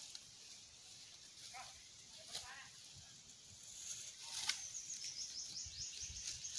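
Faint rural outdoor ambience: a steady high insect hum with a few short bird chirps, and a fast, high repeated chirping in the last two seconds.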